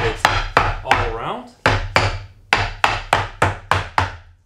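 Mallet tapping along a thin wooden strip laid over a plywood board, quick taps about three to four a second in two runs with a short pause in the middle. The taps press protruding screw tips into the strip to mark where its pilot holes go.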